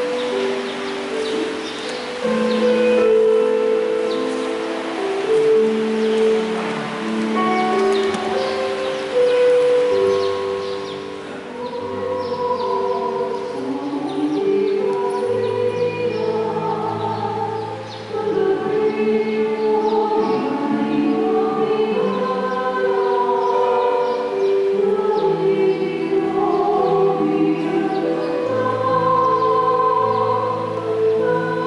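Church choir singing a slow hymn in held notes, several voice parts together over a low bass line. It is sung during the offertory procession of the Mass.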